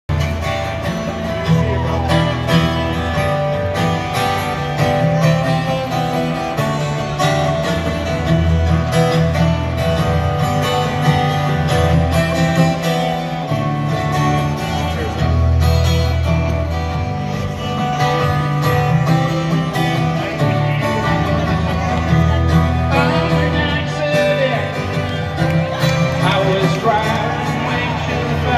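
Solo acoustic guitar strummed live through a concert PA, an instrumental introduction with no vocals yet.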